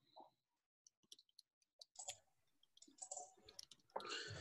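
Near silence, broken by a few faint, scattered clicks.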